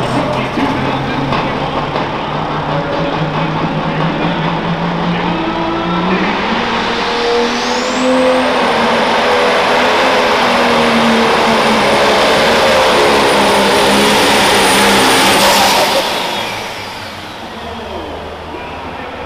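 John Deere Pro Stock pulling tractor's turbocharged diesel engine at full throttle pulling the sled. Its note climbs about six seconds in, and a high turbo whistle rises and holds over the loudest stretch. Near the end the throttle comes off and the sound drops away suddenly.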